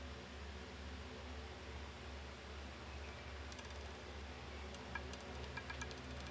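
Steady low hum and hiss of a live roulette table feed, with a few faint, light clicks in the last couple of seconds as the ball rattles on the spinning roulette wheel.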